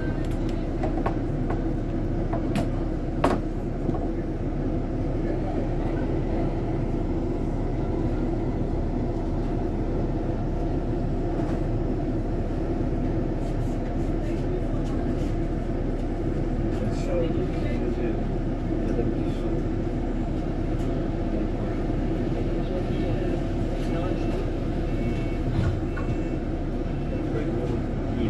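Steady low rumble inside a double-decker bus standing at a stop, with one sharp click about three seconds in and a few faint high beeps near the end.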